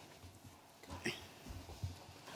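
Quiet room tone with a few faint, soft bumps and a brief faint sound about a second in.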